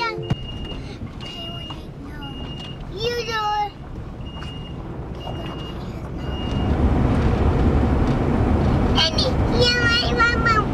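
Inside a passenger van, a high electronic warning chime beeps at an even pace, a little more than once a second, then stops after about six and a half seconds. The engine and road noise then grow louder as the van drives off, with brief children's voices in the cabin.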